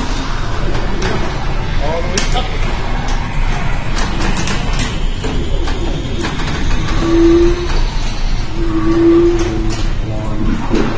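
Pinball being played in a busy arcade: many sharp clicks and knocks of flippers and ball, mixed with voices and electronic sound effects from the machines. Two short held tones sound about seven and nine seconds in.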